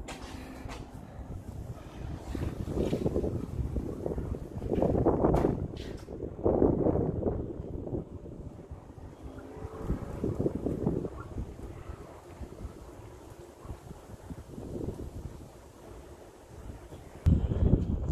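Wind buffeting the microphone in irregular gusts, a low rumble that swells and dies away every second or two. Near the end it gives way to a sudden louder burst of rumble.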